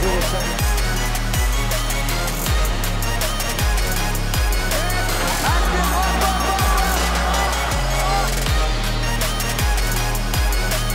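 Electronic background music with a heavy bass line and a beat about once a second.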